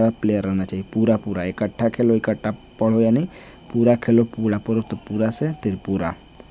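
A man speaking Hindi, with a cricket chirping steadily and high-pitched in the background.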